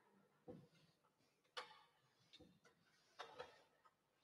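Faint, scattered clicks and light knocks, about six in four seconds, each short and separate, over near silence.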